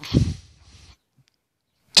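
A man's voice trailing off mid-sentence, then near silence for about a second before his speech picks up again at the very end.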